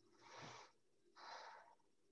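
A person breathing audibly close to the microphone: two short breaths, each about half a second, about a second apart.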